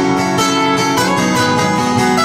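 Two acoustic guitars playing together in a folk song, one strumming chords under a picked lead guitar line.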